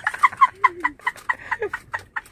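A man laughing hard in a rapid string of short, high-pitched bursts, about five a second.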